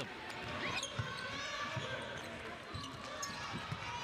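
Basketball dribbled on a hardwood court, with a few ball bounces, sneaker squeaks and a steady murmur of crowd voices.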